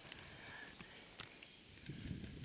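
Near silence outdoors, with a few faint, soft clicks.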